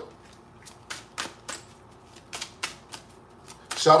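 A deck of oracle cards being shuffled by hand, heard as a string of light, irregular clicks and slaps of the cards, about three a second.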